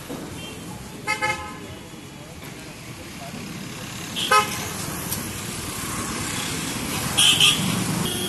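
Vehicle horns honking in street traffic over a steady traffic hum: two short toots about a second in, a single short toot about halfway through, and two higher-pitched toots near the end.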